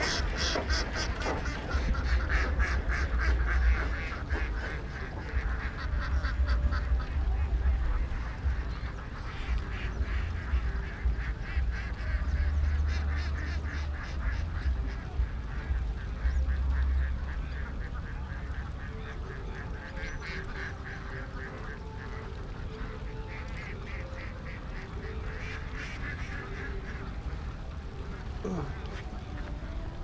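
A large flock of domestic ducks quacking in bouts, many birds calling at once, over a low rumble.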